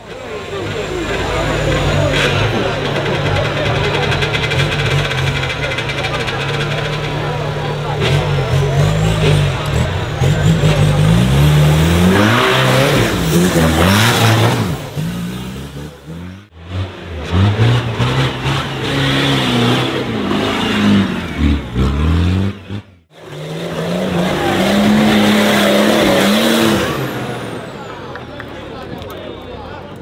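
Off-road 4x4 engines revving hard under load, pitch repeatedly rising and falling as the vehicles claw through deep mud, with spectators' voices over them. The sound cuts out briefly twice as the footage switches between vehicles.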